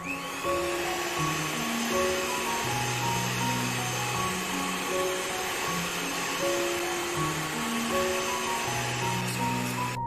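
Electric hand mixer with dough hooks running steadily in a plastic bowl, kneading donut dough of flour, eggs and yeast. The motor starts at the beginning with a brief rising whine and cuts off suddenly at the end.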